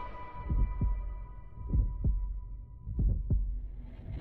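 Heartbeat sound effect in a horror-trailer-style soundtrack: three slow double thumps, about a second and a quarter apart, under a fading high held note.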